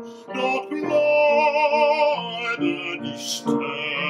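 A man singing a German art song in a trained classical voice with vibrato, over an instrumental accompaniment.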